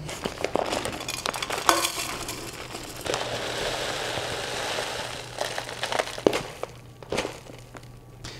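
Soy wax flakes poured from a paper bag into an aluminium pouring pitcher: crinkling of the bag and small taps at first, then a steady rustling pour of flakes from about three seconds in, trailing off into scattered taps near the end.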